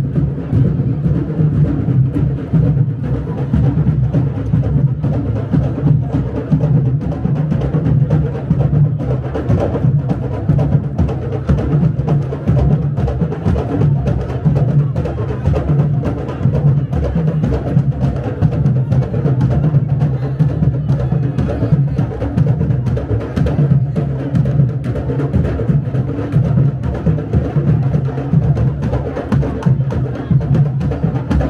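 Candombe drum ensemble: tambores struck with hand and stick, a dense steady rhythm of deep drum strokes with sharp stick clicks on top.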